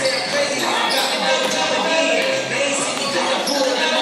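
Several basketballs bouncing on a hardwood gym floor, dribbled and landing again and again in quick, overlapping thuds.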